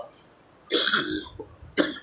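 A man coughing: one cough about two-thirds of a second in, then a shorter second burst near the end.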